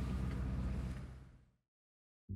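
Steady low hum and hiss of cabin noise inside a Rivian R1S, fading out about a second and a half in to silence.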